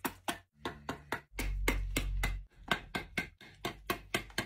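Quick, repeated chopping strikes of a hatchet into a green wooden branch, about three to four a second. A low rumble lasting about a second sits under the strikes near the middle.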